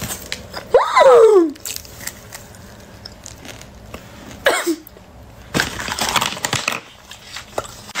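A person eating an extremely hot chip from a chip challenge: a short falling vocal exclamation about a second in, then bursts of crunching and breathy mouth noise.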